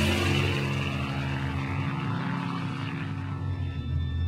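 A steady low drone in the film's soundtrack music, with a high hiss that fades away over the first couple of seconds.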